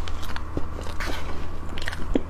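Close-miked chewing of a mouthful of whipped-cream layer cake: irregular small clicks and smacks of the mouth.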